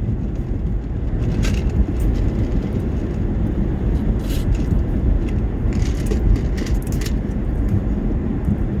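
Steady low road and engine rumble heard inside the cabin of a moving car, with a few brief faint hisses.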